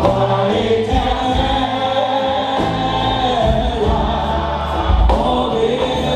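Gospel worship song: a woman sings into a microphone through a PA over amplified band accompaniment with sustained low bass notes, with other voices singing along.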